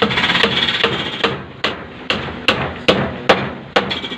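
A hammer striking repeatedly, about two to three blows a second, each blow with a short ring, as in nailing on a building site.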